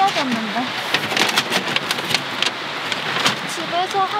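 Metal wood-stove chimney pipe sections knocking and scraping against each other as they are fitted together, with a quick run of sharp clicks in the middle, over the steady rush of a mountain stream.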